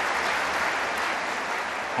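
Large hall audience applauding: a dense, even clatter of many hands clapping, easing off slightly near the end.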